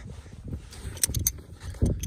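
Wind buffeting a phone microphone outdoors: an uneven low rumble with a few faint ticks about a second in and a stronger gust near the end.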